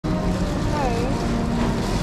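Busy supermarket ambience: a steady low rumble with faint, indistinct voices in the background.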